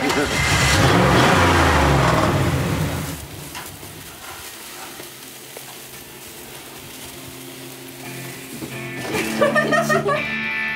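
A car engine revving as the car drives off, loud for the first three seconds. This gives way to a quieter steady sizzle of meat frying on a grill over open flame, and voices come in near the end.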